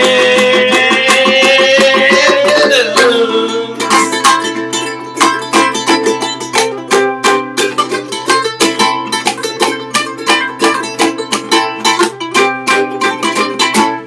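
A man holds a long final sung note over ukulele for about three seconds. Then two ukuleles strum the closing chords in a steady rhythm and stop near the end.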